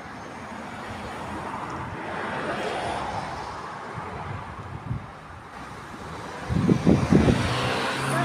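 Traffic noise of a passing vehicle, swelling for a couple of seconds and then fading. A loud, short burst of low rumbling follows near the end.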